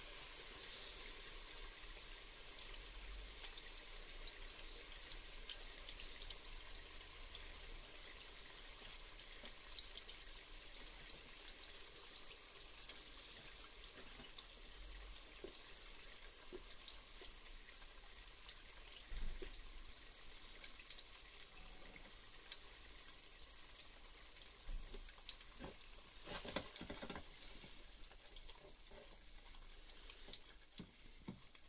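Batter-coated Tootsie Rolls deep-frying in hot oil in an electric deep fat fryer: a quiet, steady sizzle with many small pops and crackles. A few louder clicks stand out, twice in the second half.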